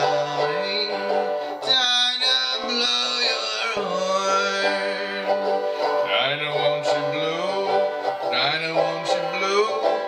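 Banjo played as accompaniment, with a man's voice singing long held notes of the melody over it.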